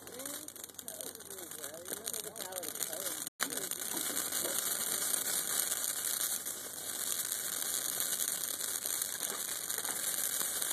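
Christmas tree and wooden pallets burning as the fire catches: a steady hiss with dense, fast crackling that grows a little louder after a brief dropout about a third of the way in.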